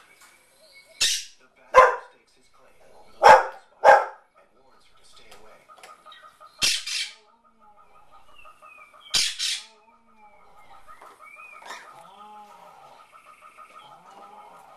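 A dog barking at the television in short separate barks, about six in the first ten seconds, some in quick pairs, with the wildlife programme's sound running faintly underneath.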